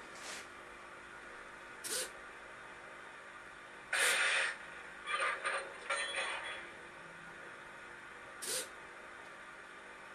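Several short bursts of hissing noise over a faint steady hiss. The loudest comes about four seconds in, with a cluster of shorter ones a second later.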